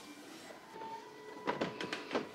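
Wooden display-cabinet door being moved and closed, a few short knocks and clicks about a second and a half in, over faint room tone.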